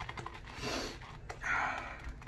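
Turn N Shave badger shaving brush working CK6 soap lather in a bowl, a run of small wet clicks, then two sniffs about a second apart as the lather is smelled.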